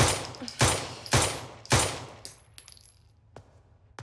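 Semi-automatic pistol fired four times in quick succession, about one shot every 0.6 seconds, each shot trailing off briefly. A few faint clicks follow after the last shot.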